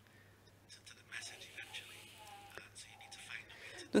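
Faint, indistinct speech, close to a whisper, over a steady low hum.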